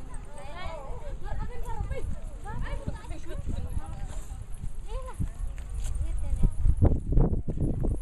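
Many women's voices chattering and calling out at once as a crowd walks together, with a run of low thumps in the last second or two.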